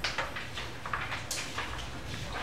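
Pencil scratching on paper in a few short strokes as a line on a drawing is redrawn.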